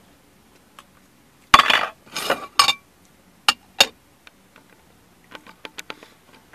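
A spoon clinking and scraping in a bowl of oatmeal: a few sharp clinks and short scrapes in the first half, then a quick run of small light taps near the end.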